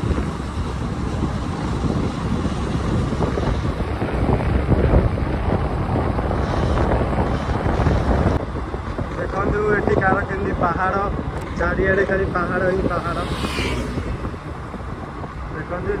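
Wind rushing and buffeting over the microphone of a moving motorcycle, loudest in the first half. A voice speaks over the wind noise for a few seconds in the second half.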